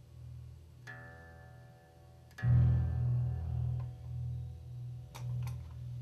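Synthesizer guitar with a low, evenly repeating pulse pattern being looped by the system. A plucked note rings out about a second in, and a louder note about two and a half seconds in slowly fades. A few sharp clicks come near the end.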